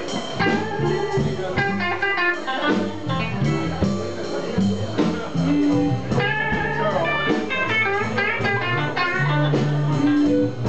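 Live blues jam: a harmonica played into a vocal microphone over electric guitar and drum kit, with quick runs of high notes.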